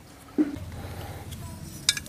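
Light metallic clinks of loose steel machine parts and hand tools being handled on the ground, ending in one sharp click just before the end.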